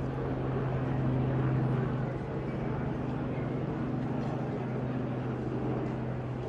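A steady low engine drone with overtones over outdoor street noise, slightly louder a second or two in.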